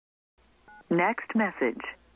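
A short telephone keypad tone, one key pressed in a voicemail menu, about two-thirds of a second in, followed by about a second of voice heard over the phone line.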